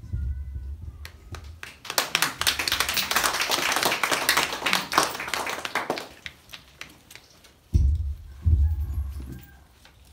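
Guests applauding: a burst of clapping that builds about two seconds in and dies away around six seconds. Then a few low thumps near the end, like a microphone being handled.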